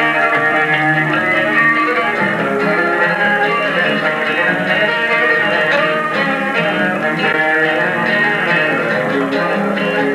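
A small fiddle band playing a lively tune: a bowed fiddle carries the melody over guitar accompaniment. The sound comes from a TV broadcast filmed off the screen on a Super-8 sound camera.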